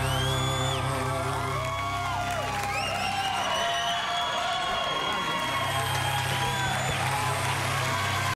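Live audience cheering and whooping over a band's sustained final chord at the end of a song. The low chord drops away for a few seconds in the middle and returns near the end.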